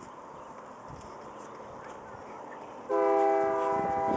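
Faint scrabbling of a terrier digging in loose soil, then, about three seconds in, a train's air horn sounds suddenly and loudly: a steady multi-note chord held without a change in pitch.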